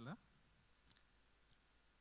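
The last of a man's word through a microphone, then near silence with a couple of faint clicks.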